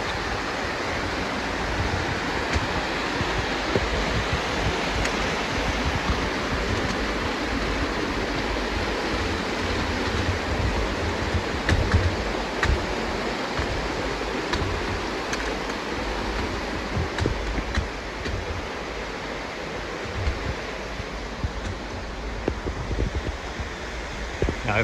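Mountain creek rushing over rocks in small cascades: a steady wash of water noise that eases slightly near the end, with an uneven low rumble underneath.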